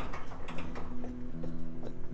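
Mash paddle stirring thick grain mash in a stainless steel pot, with light irregular clicks and knocks as it breaks up dough balls, over a steady low hum.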